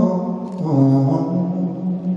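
A male singer holding long sung notes, the pitch shifting about half a second in, over acoustic guitar accompaniment in a live country song.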